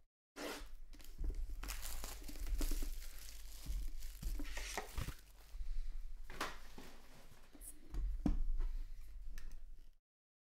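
A knife slitting the plastic shrink wrap on a sealed trading-card box, with the wrap tearing and crinkling as it is pulled off and the cardboard box is handled in irregular scrapes and rustles.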